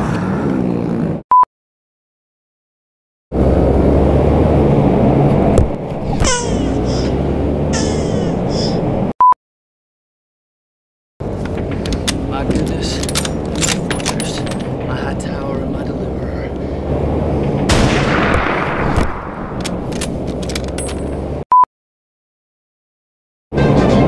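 Edited soundtrack: a short single-pitch beep three times, each beside a stretch of dead silence, with two blocks of film-clip audio between them: a man's voice over a dense, loud bed with many sharp cracks.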